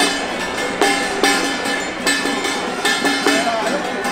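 Loud music playing steadily: held melody notes with irregular sharp percussive strikes, like traditional procession music.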